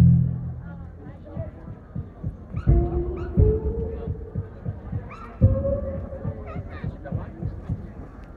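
Projection show soundtrack over loudspeakers: a deep booming hit about every two and a half seconds, each followed by a held note, over a run of quick ticks, with crowd voices around.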